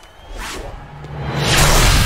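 A cartoon whoosh sound effect that swells over about a second into a loud rush, leading into music with a low, steady bass near the end.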